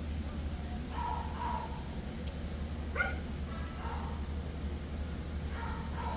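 A dog yipping and barking a few short times, the sharpest call about three seconds in, over a steady low hum.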